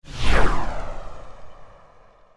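A whoosh sound effect with a deep low rumble, sweeping down in pitch and then fading away over about two seconds.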